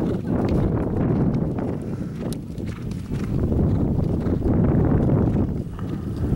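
A horse's hoofbeats over a steady low rumble.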